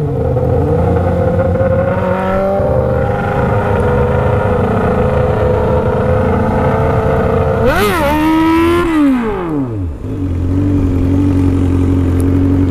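Honda Hornet's inline-four engine running under way, its pitch rising slowly as the bike gathers speed. About eight seconds in, the revs jump sharply, then fall steeply as the throttle closes, settling on a lower steady note near the end.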